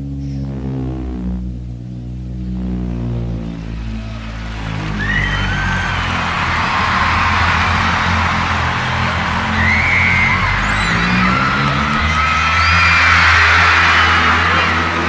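Live band holding sustained chords while a concert audience's cheering and screaming swells in from about four seconds in, loudest near the end.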